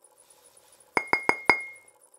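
Drinking glass clinking four times in quick succession about a second in, each strike ringing on the same clear pitch, the last one ringing on briefly.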